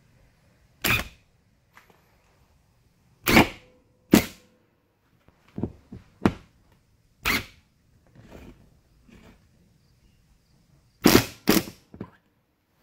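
Cordless Bosch 18V impact driver running a screw through a short piece of PVC pipe into the wall, in about ten short trigger bursts with pauses between, two close together near the end.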